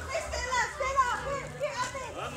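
Young children chattering and calling out in high voices while playing, with several voices overlapping.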